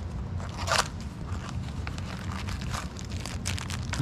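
Clear plastic parts bag crinkling and crackling in gloved hands as it is handled, in scattered bursts that thicken near the end, over a steady low hum.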